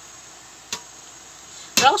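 Quiet room noise with a single sharp click about two-thirds of a second in, then a man's voice starting to speak near the end.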